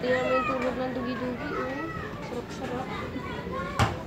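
Indistinct voices, with no clear words, mostly in the first half. A single sharp click comes just before the end.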